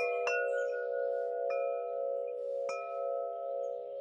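Wind chime ringing, struck again and again: a sustained cluster of bell-like tones with fresh strikes at the start, a moment later, about halfway through and again near three quarters of the way in.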